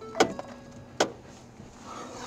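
Two sharp clunks about a second apart inside a stopped pickup truck as people climb back in, with a faint steady hum underneath.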